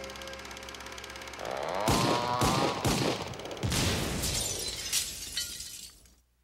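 The opening theme music ends on a held chord, followed by a comic sound-effect sequence: a rising, sliding tone, then a string of crashes and smashes, about six of them over three seconds, that dies away just before the end.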